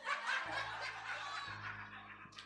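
A church congregation laughing and chuckling in response to a joke, many voices at once, over a keyboard holding low sustained notes.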